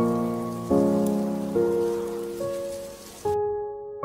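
Slow piano chords, five struck in turn and each left to ring and fade, over a steady rain sound that cuts off suddenly near the end.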